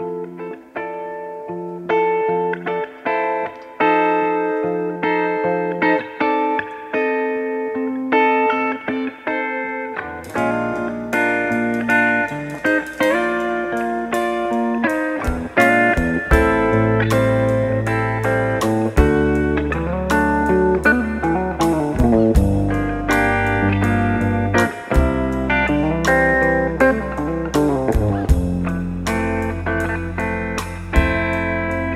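Live band playing an instrumental song intro: guitar alone at first, then drums and bass come in about ten seconds in and the full band plays on.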